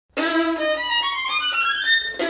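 Solo violin starts a loud, fast Presto passage a fraction of a second in, its quick run of notes climbing steadily in pitch.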